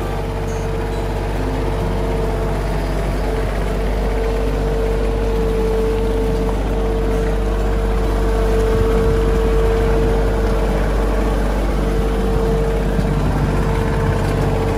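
Compact tractor engine running at a steady low speed as the tractor drives slowly, with a steady high whine over the engine hum.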